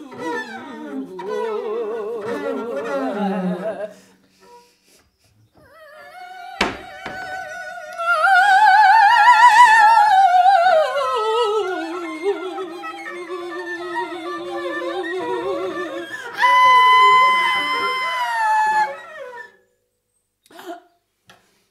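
Freely improvised wordless singing by a woman, with a wide operatic vibrato, gliding up to a high peak and slowly back down, alongside a bowed double bass. After a brief pause early on comes a single sharp knock, and near the end a steady high tone is held for a couple of seconds.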